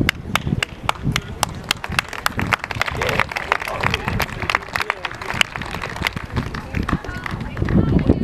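Outdoor soccer-match sound: distant voices from the field under a rapid, fairly even series of sharp clicks close to the microphone, about four a second.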